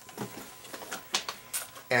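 A few light clicks and knocks with some rustling as a leather gun belt and holster rig is handled and moved about.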